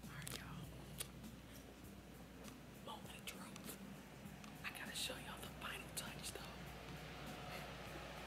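A man whispering quietly, faint, with a few soft clicks.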